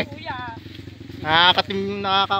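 Motorcycle engine running steadily underneath loud voices calling out twice.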